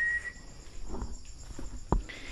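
Night-time crickets chirping steadily. A steady high whistle-like tone fades out about half a second in, and there is a single sharp click near the end.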